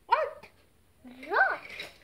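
A child's two short yelp-like exclamations, each rising then falling in pitch: a brief one right at the start and a longer one a little past halfway.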